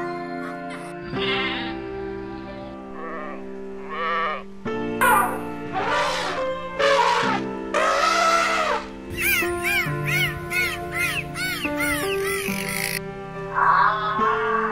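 Background music with animal calls laid over it: a few long wavering calls in the first half, then a quick run of short calls that each rise and fall, about two or three a second.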